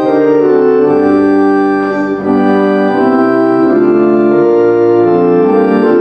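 Church organ playing the closing hymn in held chords that change every second or so.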